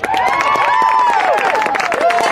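Crowd of spectators and players cheering, yelling and clapping for a touchdown, loud and breaking out suddenly, many voices shouting at once.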